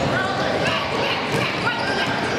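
Gym noise during a youth basketball game: voices of players and onlookers, with several short high squeaks of sneakers on the hardwood court.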